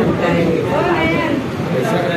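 People talking in a room: overlapping voices of casual chatter.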